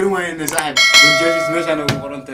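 A bright bell-like ding sound effect, the kind played with an on-screen subscribe-button and notification-bell animation. It starts just under a second in, just after a click, rings for about a second and fades, over a man's voice.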